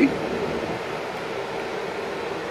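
Steady fan noise with a faint, even hum and no sudden sounds.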